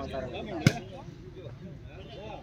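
A volleyball struck once by a player's hand, a single sharp slap about two-thirds of a second in, over the chatter of the watching crowd.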